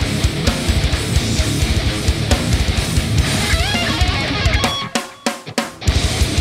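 Live heavy metal band playing loud: distorted electric guitars over fast, dense drums. A little after three and a half seconds a guitar line climbs in pitch. About five seconds in, the band drops out into a few short, sharp stabs with gaps between, then comes back in at full volume.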